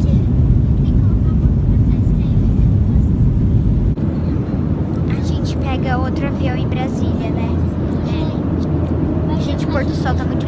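Loud, low rumble inside a jet airliner's cabin, typical of the takeoff roll. It cuts off abruptly about four seconds in to a steadier, quieter engine hum in the cabin, with children's voices over it.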